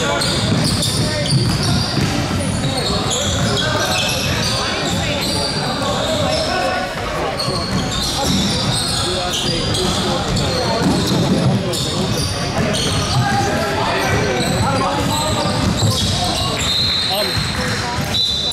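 Live indoor basketball game: a basketball bouncing on a hardwood court and sneakers squeaking, amid voices of players and spectators echoing around a large gym.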